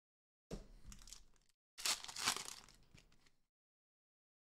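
Upper Deck Credentials hockey cards being shuffled and flicked through by hand, with cards sliding against each other in two bursts of rustling and light clicking; the second burst is louder and longer.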